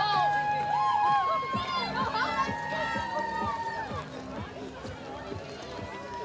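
Parade marchers and spectators calling out: two long held high calls, each about two seconds, the second starting about two seconds in, with scattered voices around them.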